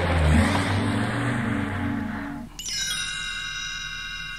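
The children's song's backing music plays on without singing and stops about two and a half seconds in. A bright, held chime-like tone then starts suddenly: the read-along cassette's signal to turn the page of the book.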